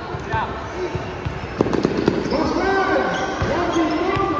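A basketball bouncing on a hard tiled floor during play, with sharp bounces loudest about one and a half to two seconds in. People's voices call and shout over it in the second half.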